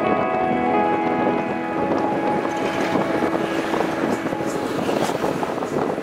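Background music with held notes fades out over the first couple of seconds, giving way to wind buffeting the microphone and the road noise of a moving truck.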